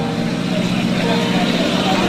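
Busy street-market ambience: a vehicle engine running steadily, with voices in the background.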